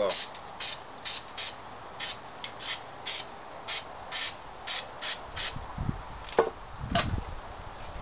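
Aerosol can of flat black spray paint hissing in short bursts, about two a second, sprayed into the inside of a tin can. A few low knocks with clicks near the end.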